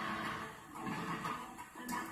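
Surf documentary trailer soundtrack: quiet music under a steady rushing noise.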